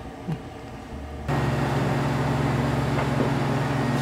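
Benchtop clinical centrifuge switching on about a second in, then running with a steady hum and whir as it spins blood tubes to separate the platelets from the red cells.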